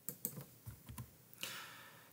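Faint, irregular clicks of computer input as the lecture document is scrolled, followed by a short soft hiss in the last half second.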